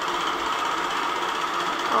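Longarm quilting machine running steadily as it stitches through the quilt.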